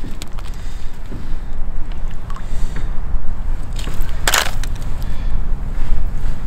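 Wind rumbling on the microphone, with a few faint clicks and one short crunch about four seconds in.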